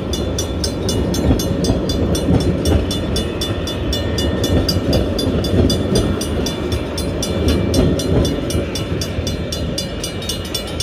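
A train rolling slowly past at a level crossing: a steady low rumble from the carriages and the DSC diesel shunting locomotive. Over it the crossing's two Griswold mechanical bells ring steadily, about five strokes a second.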